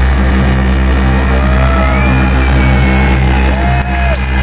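Live electronic music from a modular synthesizer: a loud, steady deep bass drone under sustained tones, with a few thin pitches gliding up and down above it.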